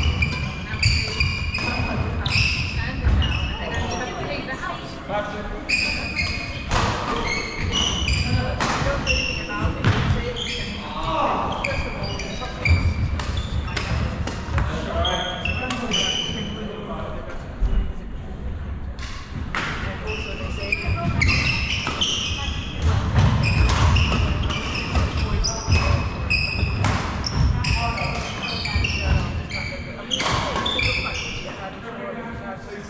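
Badminton doubles play on a wooden court in a large hall: sharp clicks of rackets hitting the shuttlecock, short high squeaks of court shoes and thudding footsteps. Voices carry through the hall.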